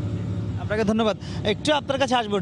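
Steady low hum of a vessel's engine or machinery running, with a man's speech starting just under a second in and carrying on over it.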